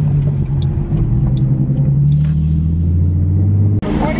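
Modded Ford Mustang V6 engine heard from inside the cabin, a steady low drone while cruising, its pitch easing slightly lower in the second half. The sound cuts off suddenly just before the end.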